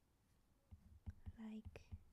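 Quiet taps and clicks of a stylus writing on a tablet's glass screen, with a woman's soft voice briefly sounding about one and a half seconds in.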